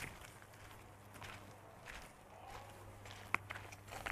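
Faint footsteps on dirt and gravel: a few soft, irregular steps, with a sharper click a little past three seconds in, over a faint steady low hum.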